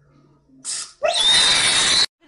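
A person's loud, shrill, harsh scream starting about a second in and held at one high pitch, cut off abruptly; a brief hissing rush comes just before it.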